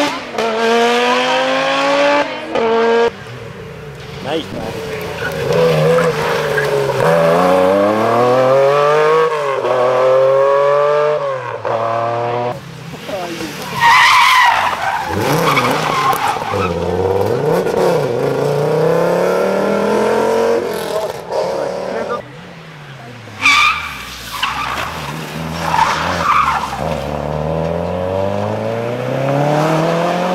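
Historic rally cars taking a tight junction one after another, engines revving hard and falling away with each gear change and lift as the cars brake, slide round and accelerate off. Tyres scrabble and skid on the dusty tarmac.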